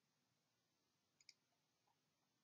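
Near silence, with two faint clicks close together a little past halfway.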